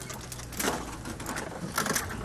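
Open game-viewing vehicle driving slowly off-road through dense bush: a low engine hum under rattling and the scrape of branches against the vehicle, with a couple of sharp knocks, one about half a second in and one near the end.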